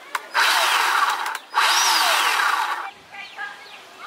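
Bauer 20V cordless 10-inch electric chainsaw triggered twice with no load, the motor and chain spinning up and winding down in two bursts of about a second each, the second a little longer.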